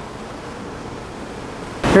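Steady rushing noise of wind and water on the open top deck of a moving river cruise boat. A man's voice starts near the end.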